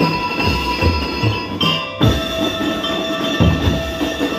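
A drum and lyre corps playing: metal-bar mallet instruments ringing out a melody over a steady beat of marching bass drums.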